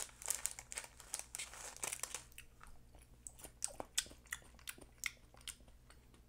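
A small plastic snack bag crinkling as it is opened, then crisp crunching as dried, barbecue-flavoured Larvets insect larvae are chewed: many short, sharp cracks.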